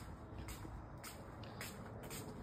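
Faint shuffling footsteps, about two a second, over a low steady room hum.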